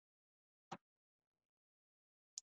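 Near silence, broken once by a short, faint click about three-quarters of a second in.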